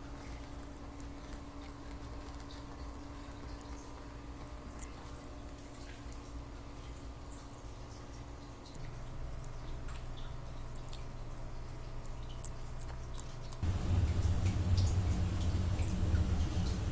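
Room tone: a steady low hum with faint scattered clicks, the hum growing louder about halfway and again near the end.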